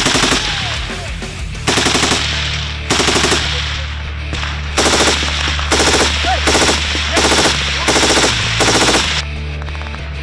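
Short bursts of automatic fire from a belt-fed machine gun: about nine bursts, each roughly half a second long, with brief gaps between them.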